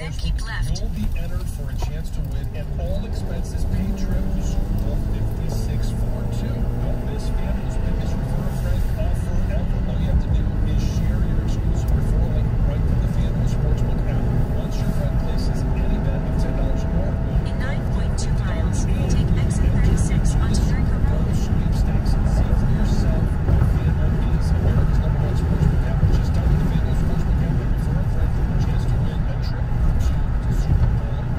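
Car interior noise while driving: a steady low rumble of engine and tyres on the road, growing a little louder after the first few seconds as the car speeds up onto a freeway.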